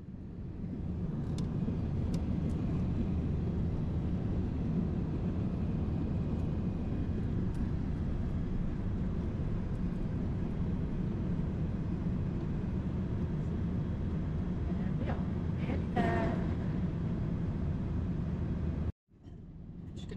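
Steady cabin drone of a Boeing 787 airliner in cruise flight, the engine and airflow noise heard from a window seat. A short bit of voice comes in about 16 seconds in, and the noise drops out briefly near the end.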